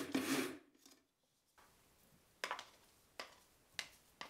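Small electric food chopper whirring for about half a second as it minces cooked shrimp, stopping suddenly, followed by a few soft knocks as the minced shrimp drops into a bowl.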